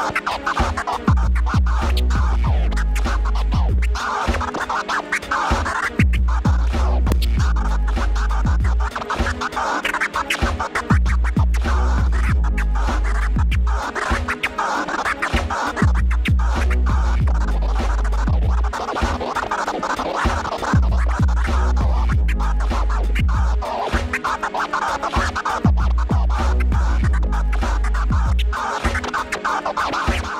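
DJ scratching a record on a turntable, quick rhythmic scratch cuts over a backing track whose deep bass comes in for about three seconds roughly every five seconds.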